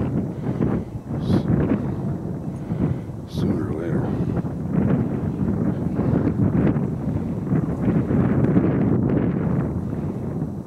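Hunting dog baying while trailing a rabbit, its voice rising and falling irregularly, mixed with wind buffeting the microphone.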